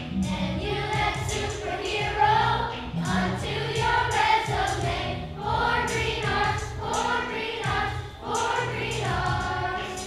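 Children's choir singing a song together over an instrumental accompaniment.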